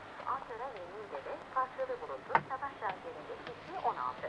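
Faint background voices, with a few light knocks and clicks; the sharpest knock comes about two and a half seconds in.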